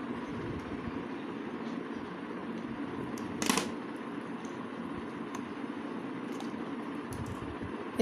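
Small handling sounds of wire being stripped with scissors over a steady background hum: faint clicks, and one short rasp about three and a half seconds in as the blades bite and drag through the insulation.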